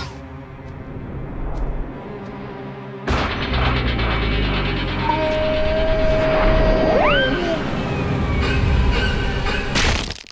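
Cartoon slapstick crash sound effects over music: a sudden loud crash about three seconds in, then a long rumbling, clattering pile-up, with a held tone that swoops sharply upward near the middle and a final hit at the end.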